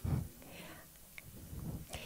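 A short pause in a woman's talk over a microphone: her last word fades out at the start, a faint click comes about a second in, and a soft breath is heard near the end before she speaks again.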